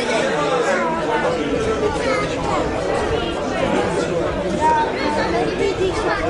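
Several people talking over one another: a steady babble of voices.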